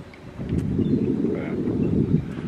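Wind buffeting the microphone: a low, gusty rumble that builds about half a second in and holds.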